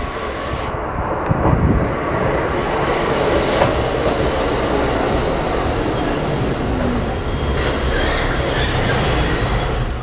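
Kotoden electric train pulling into the station: a steady rumble of wheels on the rails that builds over the first two seconds, with high wheel squeal near the end.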